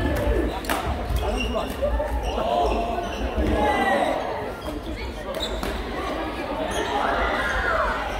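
Badminton rackets striking a shuttlecock during a doubles rally, sharp pops at uneven intervals, echoing in a large sports hall, with players' voices around them.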